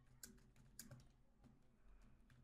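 Faint keystrokes on a computer keyboard: a handful of soft, irregular clicks as a word is typed.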